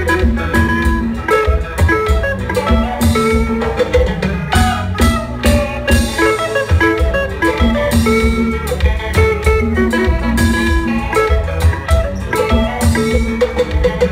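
Live konpa band playing an instrumental passage: electric guitars over bass, keyboard and drums, with a steady beat.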